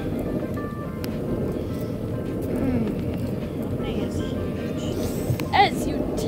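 A boat's engine running with a steady low rumble, under muffled voices and faint music; a short high-pitched voice cuts in near the end.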